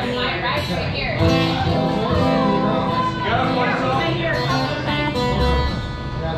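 Acoustic guitar being tuned: strings plucked and strummed, with notes held from about a second in.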